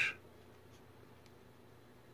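Near silence: room tone with a few faint clicks, just after the end of a spoken word.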